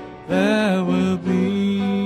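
A man singing a slow gospel song in long held notes, breaking off briefly at the start and then coming back in.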